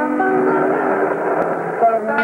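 A tune of held notes sung to "bum, bum, bum" syllables, with the pitch stepping from note to note.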